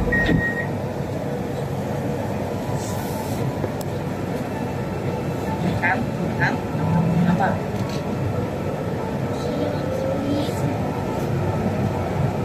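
Steady rumble of an MRT metro train heard from inside the front car as it pulls out of an underground station and picks up speed into the tunnel, with a few short high chirps around the middle.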